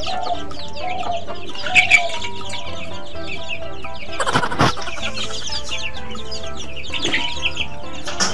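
Chicken clucking in short calls, with a louder call about four seconds in, over steady background music.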